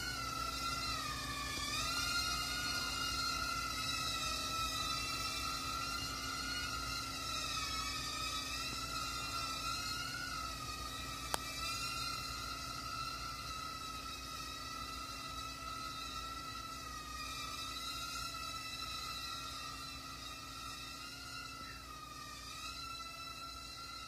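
WL V272 mini-quadcopter's four small motors and propellers in flight, a steady high-pitched whine whose pitch wavers slightly as the throttle and manoeuvres change. It grows gradually fainter toward the end, with a single brief click about eleven seconds in.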